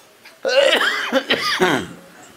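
A man coughing and clearing his throat in a few short bursts.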